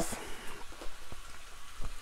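Curry-coated chicken pieces frying in oil in a nonstick pan, a steady soft sizzle with scattered crackles as the chicken browns.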